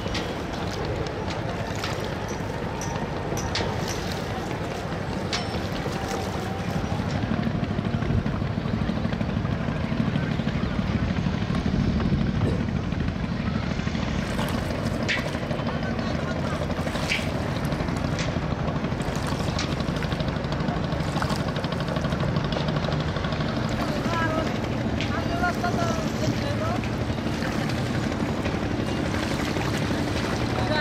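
Busy river ambience: a steady low engine drone, louder from about seven seconds in, with distant voices and occasional knocks.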